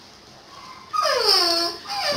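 A high-pitched cry about a second in, lasting under a second and falling steeply in pitch.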